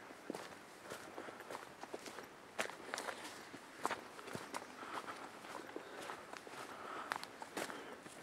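Faint footsteps on a wet dirt trail, soft irregular steps with a few sharper scuffs and crunches.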